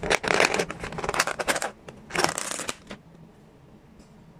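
Clear plastic takeaway food container being handled and its lid pulled open: crackling plastic rustles in several bursts, stopping about three seconds in.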